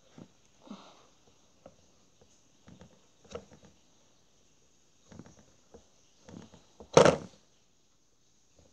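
Scattered small taps and clicks of wooden miniature pieces being handled on a wooden table, with one louder thump about seven seconds in.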